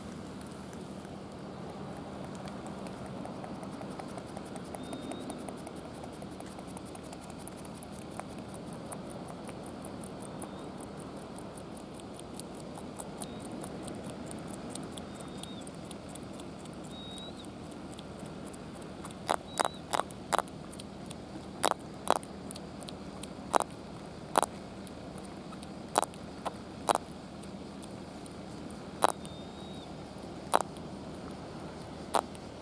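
Red-eyed pufferfish (akamefugu) grinding its teeth: a dense run of faint fine clicks, then from about two-thirds in about a dozen sharp, loud clicks at irregular intervals, over a steady low hum.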